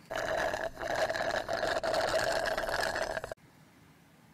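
Slurping a thick iced blended drink through a plastic straw: a steady, rough, rattling suck that cuts off suddenly a little over three seconds in.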